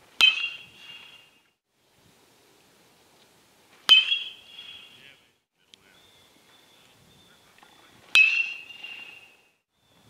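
A metal baseball bat striking pitched balls three times, about four seconds apart, each hit a sharp ping followed by a ringing tone that fades over about a second.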